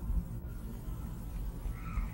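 A pause between spoken phrases: only the recording's low background hum and rumble, with a faint brief sound near the end.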